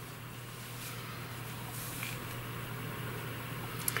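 A steady low hum with a few faint soft ticks and rustles from wooden knitting needles and yarn being handled.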